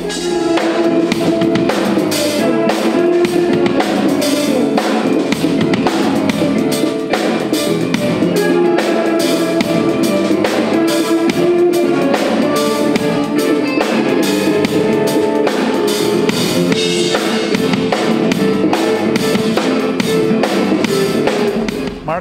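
DW drum kit with Zildjian cymbals played live in a dense, fast pattern of many quick strokes on drums and cymbals, with held pitched tones underneath.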